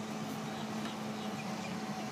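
A steady low background hum, even in level, with no racket hitting a ball.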